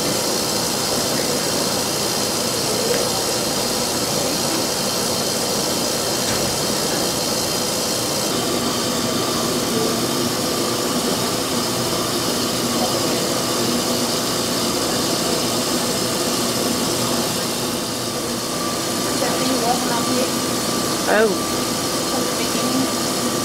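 Electric mixer running steadily, its flat beater churning thick chocolate fudge mixture in a metal bowl. A steady whine joins in about a third of the way through.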